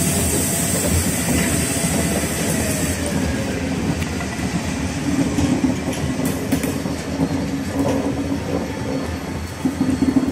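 Diesel locomotive running steadily as it hauls passenger coaches slowly out of a siding, with a low engine hum and wheels clicking over rail joints and points from about halfway through.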